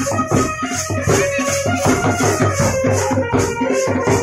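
Band baja wedding music: drums beaten in a quick, steady rhythm, about four strokes a second, with a rattling shaker-like sound on each beat and a sustained melody line over them.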